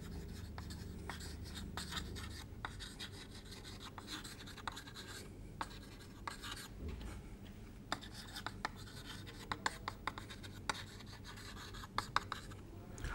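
Chalk writing on a chalkboard: faint, irregular taps and short scratches as the chalk forms each stroke, over a low steady room hum.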